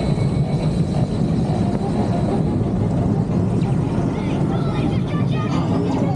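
Steel roller coaster train (the Incredicoaster) running along its track: a loud, steady low rumble that comes up sharply at the start.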